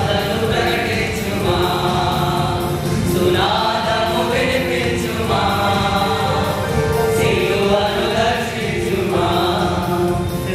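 Male choir singing a Telugu Christian song together, in long held phrases.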